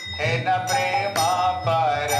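Devotional kirtan: singing of a chant over a steady beat of small metal hand cymbals struck about twice a second.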